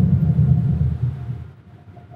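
Automatic tunnel car wash machinery heard from inside the car's cabin: a really loud low rumble that fades away about halfway through as the car leaves the wash.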